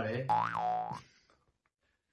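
A cartoon-style comedy sound effect, a springy boing-like tone under a second long that swoops up in pitch and back down, then holds briefly before cutting off.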